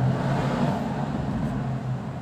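A pen writing on paper, with a steady low hum and hiss of background noise underneath.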